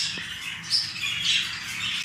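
A flock of exhibition budgerigars calling continuously, high-pitched chatter with a few louder calls standing out, about three quarters of a second in and again a little past the middle.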